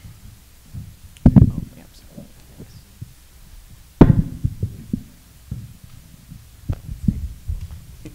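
A tabletop microphone being handled and moved: two loud, dull thumps, about a second in and again about four seconds in, with smaller knocks and rustles between them.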